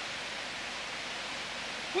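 Steady, even rushing hiss with no distinct events.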